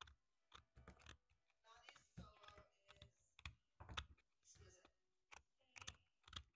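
Faint, irregular clicks and small cracks of a chisel being pressed by hand into a log, paring wood out of a candle hole.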